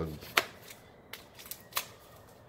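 Small cardboard shipping box being handled and slid out of a padded mailer: one sharp click about a third of a second in, then three lighter clicks and faint paper rustling.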